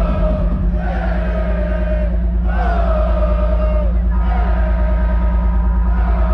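Live electronic dance music over a festival PA, heard from within the crowd: a heavy, steady bass under a short melodic phrase that repeats about every second and a half, rising then sliding down each time.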